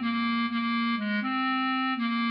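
Bass clarinet playing the melody slowly in long held notes, moving to a lower note about a second in and back up a moment later, over a low steady tone underneath.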